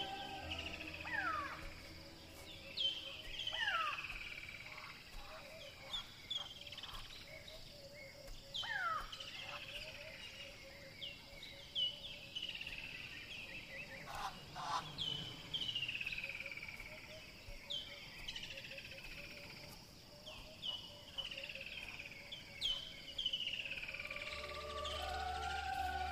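Wild birds calling in bush: many clear whistles, each sliding downward, repeated every second or two, with a faint rapid pulsing call lower in pitch underneath. Music comes back in near the end.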